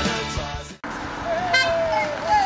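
Rock music that stops abruptly less than a second in, then, outdoors, a brief car horn toot about a second and a half in, with a raised voice calling round it.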